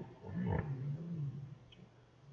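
A person making a low, growly vocal sound that wavers for about a second.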